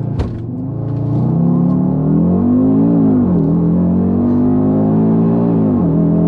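2020 Audi RS Q3's turbocharged five-cylinder at full throttle from a launch. A sharp bang comes right at the start as the drive takes up, and the occupants take it for the clutch engaging hard in the gearbox, saying it "didn't sound healthy". The engine note then rises, drops at an upshift about three seconds in, rises again, and drops at a second shift near the end.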